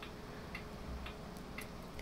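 Faint, regular ticking, about two ticks a second, over low room noise.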